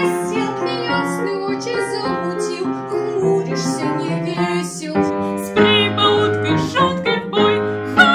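A girl singing a Russian wartime song over piano accompaniment.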